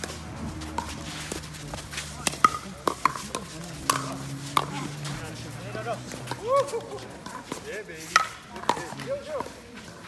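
Pickleball rally: sharp pops of paddles striking the hollow plastic ball, coming about every half second to a second through the first half and thinning out after.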